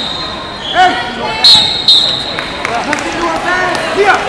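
People shouting beside a wrestling mat in a large hall. Short, steady high-pitched tones cut in twice about a second and a half in.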